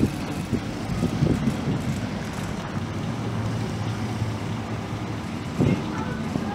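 Classic Jaguar's engine running at low speed as the car rolls slowly past, a steady low hum, with gusts of wind on the microphone.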